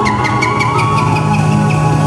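Live band music from a Bihu song, an instrumental passage with regular drum strikes, sustained low notes and a high held melody line that rises slightly.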